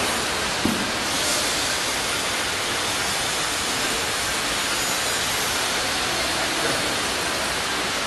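Steady, even hiss of factory-floor machinery noise in a metal-fabrication workshop, with one short click just under a second in.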